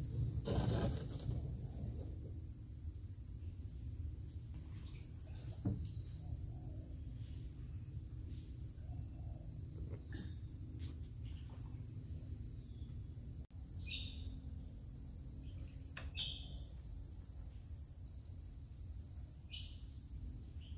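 Steady, high-pitched drone of insects, with a low rumble underneath and a few short chirps in the second half.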